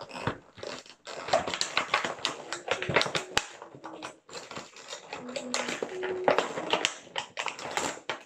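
Clear plastic toy packaging crinkling and crackling in a dense, irregular run as it is pulled at and worked open by hand.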